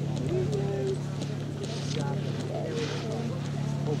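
Faint, distant voices of spectators over a steady low hum, with two brief hissing bursts partway through.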